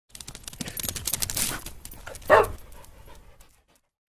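A dog panting in quick breaths, then one short bark about two and a half seconds in, after which the sound fades away.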